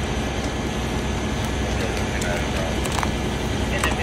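Fireground ambience at a fully involved house fire: a steady low rumble of running engines, with scattered sharp crackles and pops from the burning structure and faint voices in the background.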